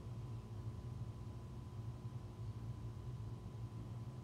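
Quiet room tone: a steady low hum with no distinct event.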